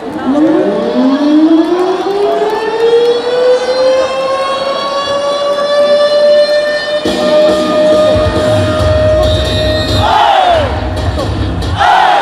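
A siren sound effect played over the stadium PA, its pitch rising slowly for about seven seconds and then holding steady, signalling the start of the 8th-inning voice cheer. From about eight seconds in, a heavy bass beat joins it, and a crowd shout rises near the end.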